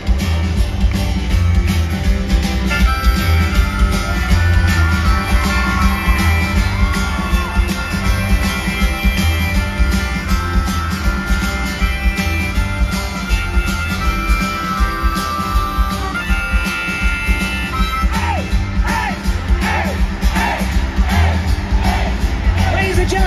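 Rock band playing live at full volume: electric guitar, bass guitar and drums, recorded from the crowd.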